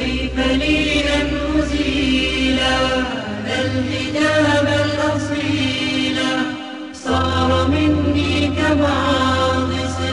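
Arabic nasheed: a chanted vocal melody over a low steady hum. It starts suddenly and breaks off briefly about seven seconds in before resuming.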